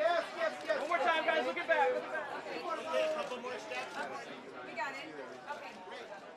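Overlapping voices of red-carpet photographers and press chattering and calling out, growing quieter toward the end.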